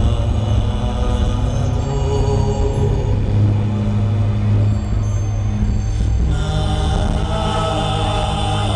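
Deep, slow chanting over a sustained low drone, played through a concert arena's sound system and recorded from the crowd. About six seconds in, higher sustained tones join the chant.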